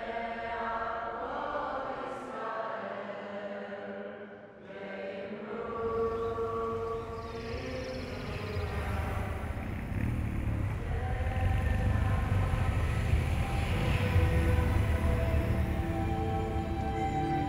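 Slow choral chanting in long held notes, a mournful sung lament. From about six seconds in, a low rumble of passing motorcycle engines swells beneath it and grows louder toward the end.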